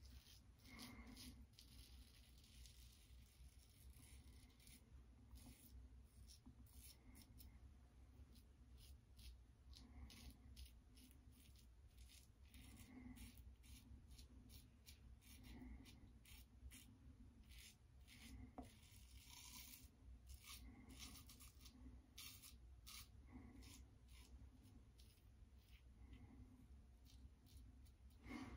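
Faint, short scraping strokes of a Leaf Shave Thorn razor cutting stubble through shaving lather, coming in quick irregular runs.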